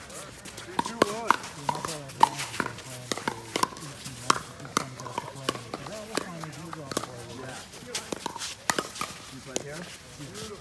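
Pickleball paddles striking a hard plastic ball in a rally, with the ball bouncing on the court: a string of sharp knocks, roughly one or two a second. Voices talk underneath.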